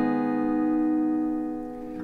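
Brunswick AGF200 acoustic guitar, capoed at the fourth fret, letting an E minor chord shape ring out and slowly fade.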